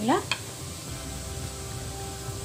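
Wooden spatula stirring cooked rice in an aluminium pressure cooker: soft, continuous scraping and rustling of the grains against the pot. A brief spoken word comes at the very start.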